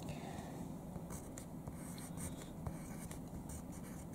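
Faint scratching of a pen tip writing by hand on a paper worksheet, in many short strokes.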